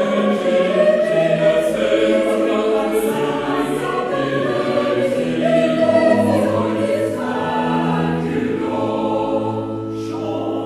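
Small vocal ensemble singing a 17th-century sacred Latin motet in several parts, the voices moving in slow chords over steady low notes from a cello and organ continuo.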